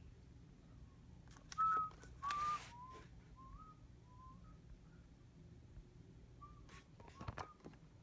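A person whistling softly, a handful of short, slightly wavering notes in two phrases, with a brief rustle about two seconds in.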